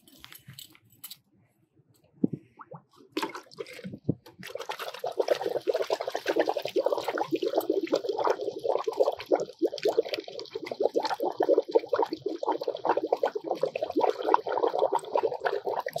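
A spent OBA canister dropped into a bucket of water, then bubbling steadily and busily as the leftover chemical inside reacts with the water. The bubbling starts about three seconds in, after a few small clicks.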